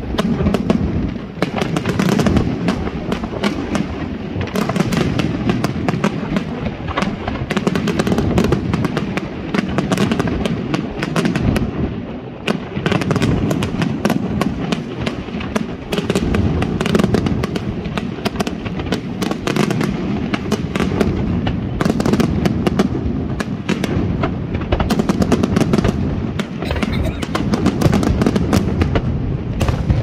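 Fireworks display: a continuous, rapid barrage of aerial shell bursts and crackling, many bangs a second over a steady low rumble, with no pause.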